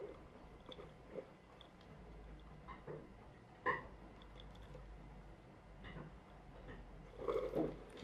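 Faint clicks and crackling from a homemade plastic-bottle car with CD and cardboard wheels being handled as its rubber band is wound by turning a wheel, with one sharper click about halfway through. A louder clatter near the end as the car is set down on the wooden floor.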